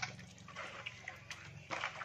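Faint wet squelching and sloshing of hands kneading beef tripe in a plastic basin of water, with small scattered clicks: the tripe being scrubbed clean with vinegar and salt.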